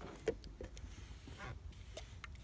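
Handling noise from a plastic squeeze bottle of alcohol being squeezed over car paint: a few quiet clicks and short squeaks.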